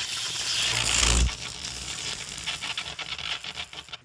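Electric-crackle title sound effect: a rushing hiss that ends in a low boom about a second in, followed by fast crackling clicks that thin out and fade.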